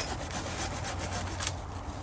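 Hand pruning saw cutting through a thick English ivy stem on a tree trunk, in quick back-and-forth rasping strokes that sever the stem.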